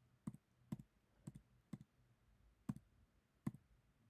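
Six faint, sharp computer clicks, about half a second apart with a short gap in the middle, as lecture slides are clicked forward one after another.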